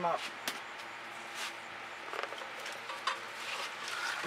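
Quiet handling noises of painting supplies: a few soft clicks and light taps over a low steady hiss, the sharpest tap about half a second in.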